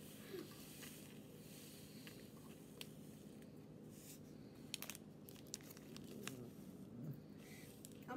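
Faint crinkling of a small plastic baggie as crystals are poured from it into a plastic ball mold, with a few scattered small ticks.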